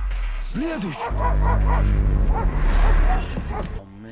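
Dogs barking repeatedly, short sharp calls, over a deep steady rumble that stops shortly before the end; heard from a TV drama's soundtrack.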